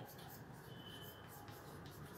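Chalk writing on a blackboard: faint scratching strokes as letters are written, with a brief thin high squeak of the chalk a little before the middle.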